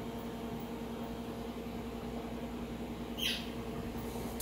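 A bird's single short chirp, falling sharply in pitch, about three seconds in, over a steady low electrical hum.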